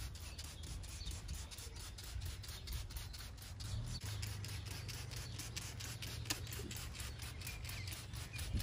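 Hand trigger spray bottle spritzing detailing spray onto car paint and glass in quick repeated squirts, about four or five a second, over a low steady rumble.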